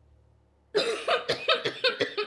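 A woman coughing hard in a rapid fit that starts suddenly about three quarters of a second in, with about four sharp coughs in quick succession. She is choking on a swallow of a drink she calls strong.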